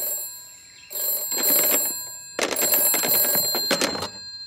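Cartoon telephone bell ringing in repeated bursts of about a second and a half, with a short pause between rings: an incoming call on a wall-mounted rotary telephone.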